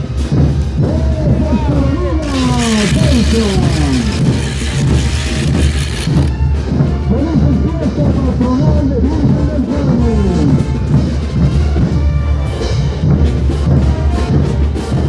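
Festival brass band music with a heavy, steady bass line, and voices over it, many of them sliding downward in pitch.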